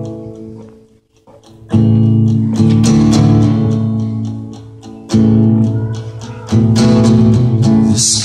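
Acoustic guitar playing a song's introduction: it dies away briefly about a second in, then chords are strummed and left to ring, a fresh chord struck every second or few seconds.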